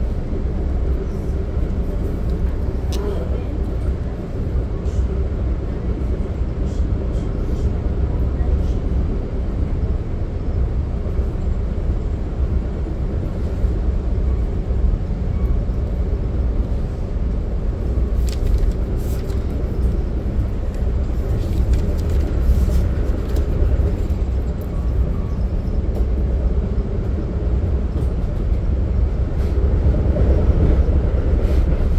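Inside a Budd gallery commuter coach rolling along at speed: a steady low rumble of wheels on rail and car body, with scattered light clicks and rattles.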